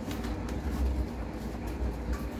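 Hands working a knobby mountain-bike tyre's bead over the rim: rubber rubbing and a few faint clicks over a steady low rumble.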